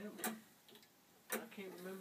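1890s E. Howard #1 tower clock's gravity escapement ticking: two sharp ticks about a second apart.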